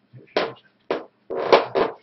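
A man's voice: a few short, indistinct vocal sounds, the loudest in the second half.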